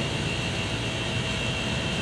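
Steady, even background drone with a faint high whine running through it. It is an outdoor machine-like or distant engine noise with no clear events.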